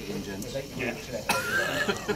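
Men talking and chatting, then a high, drawn-out laugh with a wavering pitch starting a little over a second in.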